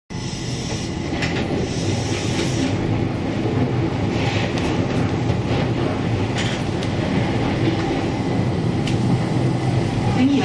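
Keihan 800 series train running along the track, heard from inside the front cab: a steady rumble of wheels on rail and running gear, with a few brief higher-pitched noises over it.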